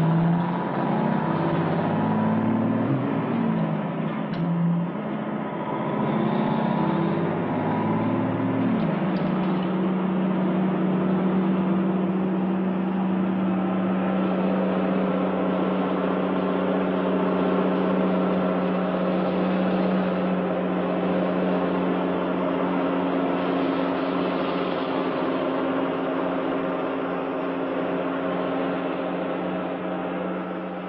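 A motor vehicle's engine, its pitch rising and falling for the first nine seconds or so, then settling into a steady hum.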